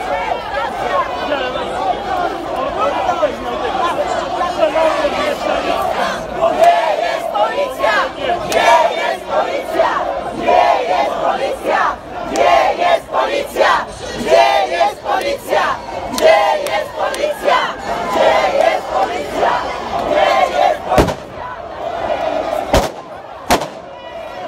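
A large crowd shouting, many voices at once and loud throughout, with a few sharp cracks or bangs near the end.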